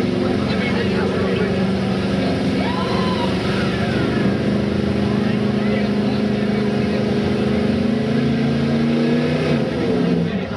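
Pickup truck's engine running hard and steady under load as the truck churns through a mud pit, its note dipping near the end. Crowd voices are faint underneath.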